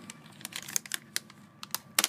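Plastic snack bag crinkling and crackling as it is handled, a string of irregular sharp clicks with the loudest near the end.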